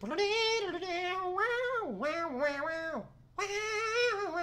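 A man imitating a saxophone with his voice: high, wavering held notes that slide between pitches, in three phrases with a short break about three seconds in.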